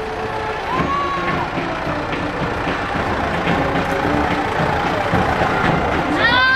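Tractor engine running steadily close by as it tows a parade float, over a background of crowd noise, with a brief high call about a second in.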